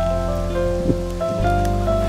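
Background music: a gentle melody of held notes over a steady bass, the notes moving in small steps.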